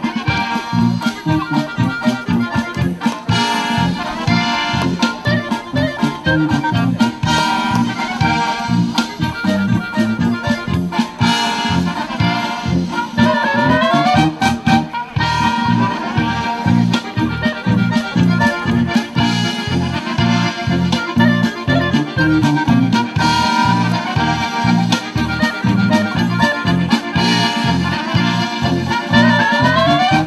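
German folk dance music led by accordion with brass, playing at a steady, even beat. Quick rising runs come about halfway through and again at the very end.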